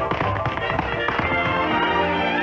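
Rapid tap-dance steps, a quick run of sharp clicks from tap shoes on a stage floor, over orchestral music. About a second and a half in the taps stop and the orchestra carries on with held chords.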